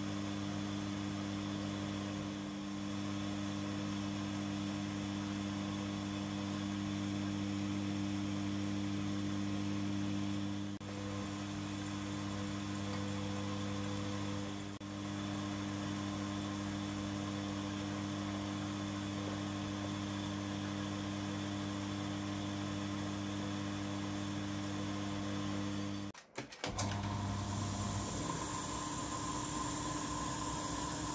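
Milling machine's electric motor and spindle running with a steady hum while a centre drill is fed into a cast iron axlebox block. About 26 seconds in the sound breaks off briefly, and the machine then runs on with a higher-pitched tone.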